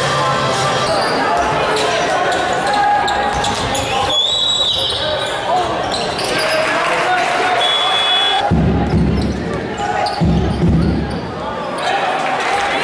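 Live basketball game sound in a large hall: a ball dribbling, voices calling out, and a few short high squeaks of shoes on the court. About two-thirds of the way through come two short stretches of heavy low rumble.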